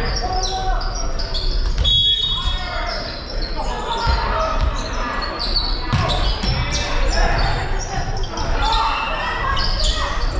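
Indoor volleyball rally in a large gymnasium: sharp knocks of the ball being struck and hitting the hardwood floor, echoing in the hall, under continuous calls and chatter from players and spectators. A short high steady tone sounds about two seconds in.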